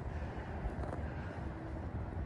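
Low, steady outdoor background rumble with no distinct events.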